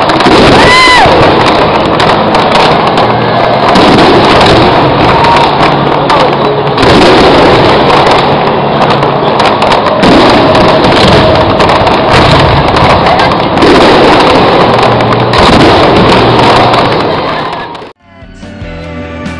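Fireworks display recorded at very high level: a dense, unbroken wall of bangs and crackle, with stronger blasts about every three to four seconds and a short rising whistle about half a second in.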